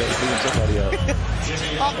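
Basketball arena sound during live play: steady crowd noise with music from the arena speakers, the low rumble strongest in the first part.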